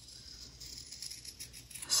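Fabric scissors faintly snipping through a stack of two fabric layers with batting beneath.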